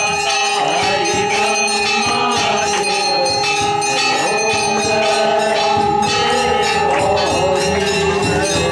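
Temple bells ringing rapidly and continuously for an aarti, with steady sustained ringing tones and voices singing underneath.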